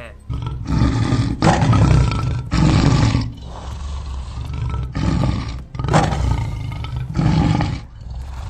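Scary creature roars voicing a cartoon ghost monkey: about five loud, rough roars of half a second to a second each, with a quieter stretch in the middle.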